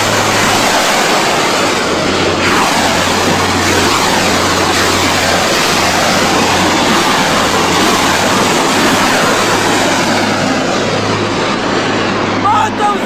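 Iron Dome Tamir interceptor missiles launching one after another, their rocket motors making a loud, continuous rushing roar that holds steady.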